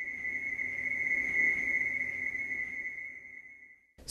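A single steady high-pitched electronic tone that swells up and then fades away, with a faint low hum beneath it.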